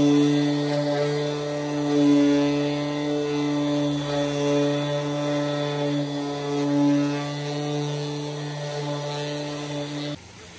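Corded random orbital sander running steadily against a car's front bumper, sanding the panel smooth ahead of primer and paint. A steady motor hum that swells and dips in loudness as the pad is pressed and moved, then stops suddenly at the end.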